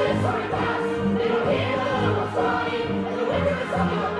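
Musical theatre ensemble singing live with the pit band and keyboard accompaniment, several voices holding sustained notes over chords.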